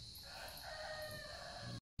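A single drawn-out call lasting about a second and a half, crow-like, over a steady high-pitched buzz of insects. The sound drops out abruptly just before the end.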